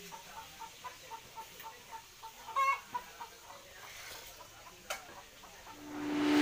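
Chicken clucking: a quiet run of short notes, about four a second, with one louder call about halfway through.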